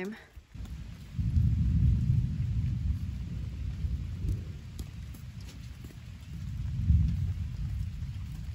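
Low rumble of distant thunder, swelling about a second in and again near the end.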